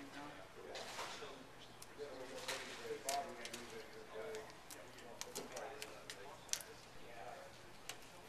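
Low background voices with scattered small clicks and taps from hands working a hose and plastic pole fitting.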